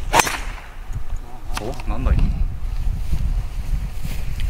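Driver striking a teed golf ball: one sharp crack of impact just after the start.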